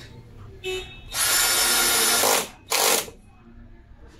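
Ryobi cordless drill running into a wooden wall board: a quick blip, a steady run of about a second and a half, then one short final burst.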